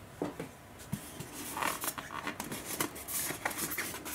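Hands handling and opening a polystyrene foam packaging insert in a cardboard box: a run of small, irregular knocks, scrapes and rubs, busier from about a second and a half in.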